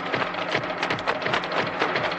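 Film soundtrack with a rapid, dense clatter of sharp strikes, about eight to ten a second, over a low steady hum.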